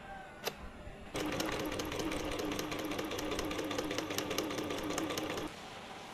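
Electric sewing machine stitching a strip of T-shirt fabric: a fast, even run of needle strokes for about four seconds that then stops abruptly. A single click comes shortly before it starts.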